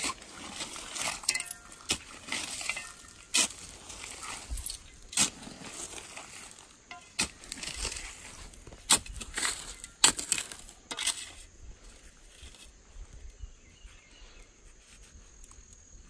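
Short-handled digging pick chopping into dump soil full of old glass and shells: about ten sharp, irregular strikes with glassy clinks over the first eleven seconds. After that comes quieter scraping and sifting, with a steady high insect buzz.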